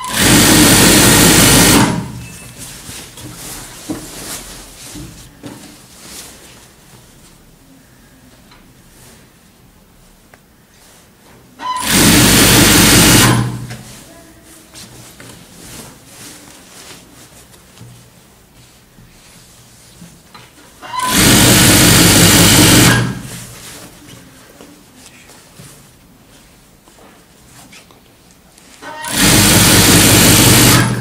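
A Typical-brand industrial sewing machine stitching a seam through wedding-dress satin in four short runs of about two seconds each. The runs start near the beginning, about twelve seconds in, just past twenty seconds, and near the end, with soft fabric-handling sounds between them.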